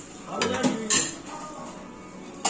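Metal serving spoons clinking against stainless steel chafing dishes, a few sharp clinks with the loudest about a second in.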